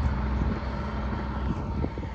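Engine of a tracked brush-cutting machine running steadily under load as it cuts bracken and gorse, with a few brief knocks.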